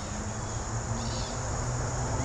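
Insects trilling in a steady, unbroken high-pitched drone, with a faint low hum underneath.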